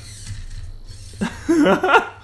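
Hobby servo motors in a small 3D-printed robot arm whirring and grinding as the arm makes a stabbing move, over a steady low hum. The builder thinks the erratic servo motion comes from a noisy control signal that needs capacitors. A man laughs over the last part.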